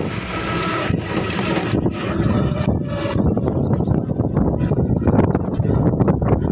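Wind buffeting the phone's microphone, a steady low rumble with no clear pitch.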